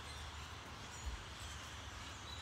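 Faint, distant bird chirps over a steady outdoor background hiss, with a low rumble from the phone being carried and a soft bump about a second in.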